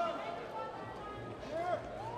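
Indistinct voices with a few short shouted calls over hall background noise.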